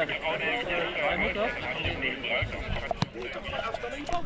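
Indistinct men's voices talking and calling out on a football pitch, with one sharp click about three seconds in.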